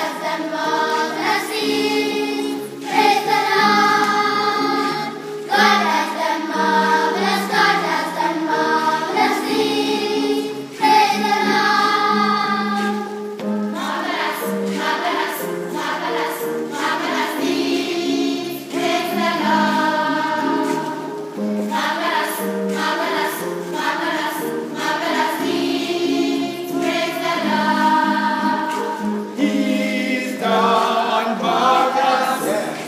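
Children's choir singing together, in phrases of held notes.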